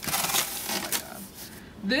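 Cardboard box flaps rubbing and scraping as a shipping box is opened, busiest for about the first second, then quieter.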